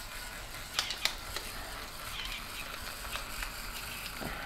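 Hand-twisted pepper mill grinding peppercorns over a steak, a faint steady crunching with a few sharp clicks about a second in.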